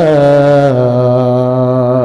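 A man's voice chanting one long drawn-out note in the melodic style of a waz sermon, amplified through a microphone. The pitch steps down just after the start and again under a second in, then holds steady.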